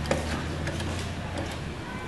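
Claw machine: a sharp click a moment in, then a steady low hum with a few faint ticks as the claw gantry is worked for another grab.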